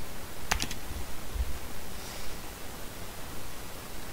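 Two quick keystrokes on a computer keyboard about half a second in, typing the last letters of a word, over a faint low background rumble.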